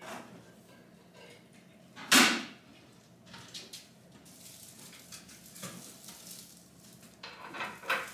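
Handling sounds as a folding step ladder is set up and a lampshade is lifted and fitted: one loud, sharp clatter about two seconds in, then scattered lighter knocks and rustles.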